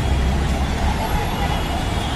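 Steady low rumble of street traffic with a general outdoor hubbub.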